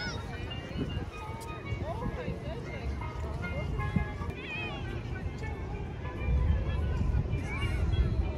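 Indistinct voices of people talking, with music playing underneath, over a low rumble that swells near the end.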